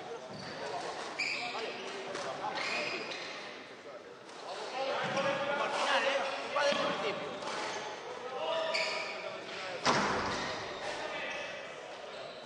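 A squash ball being struck and hitting the court walls during a rally: a string of sharp knocks that echo in a large hall, the loudest one near the end.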